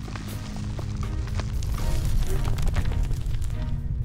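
Dramatic background music over a deep, steady rumble. About two seconds in, a crackling rock-breaking sound effect comes in and gets louder: a cartoon earthquake, with rock splitting apart.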